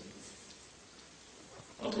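Faint, even hiss of room tone in a pause between a man's sentences; his voice comes back near the end.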